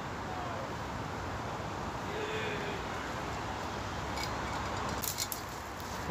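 Steady wind noise on the microphone, with a quick run of sharp clicks and light rattles in the last two seconds.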